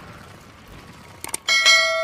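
Two quick clicks, then about one and a half seconds in a sudden bright bell-like ding that rings on with many overtones, an intro sound effect.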